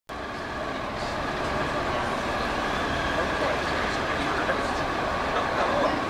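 Steady city street background noise: the hum of traffic with faint voices mixed in.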